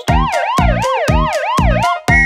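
Police siren sound effect wailing quickly up and down, about two and a half sweeps a second, over the steady drum beat of a children's song.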